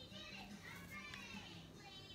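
Faint, high-pitched children's voices in the background, over a low steady hum.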